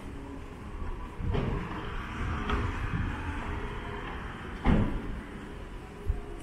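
Street ambience with a steady background of traffic, broken by a few sharp knocks, the loudest about three-quarters of the way through.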